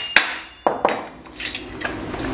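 Light hammer taps on the hub of a chainsaw's magneto flywheel, which is levered from behind with a screwdriver to knock it loose from the crankshaft. There are three sharp metallic taps in the first second, then quieter clinks of metal being handled.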